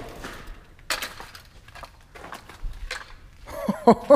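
Scattered footsteps and sharp clicks as someone moves over burned debris. Near the end a man starts laughing in short, regular bursts.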